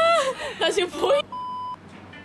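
Loud, high-pitched women's voices shouting and exclaiming, then a short, steady electronic beep of about half a second, a censor-style bleep, cutting in about a second and a quarter in.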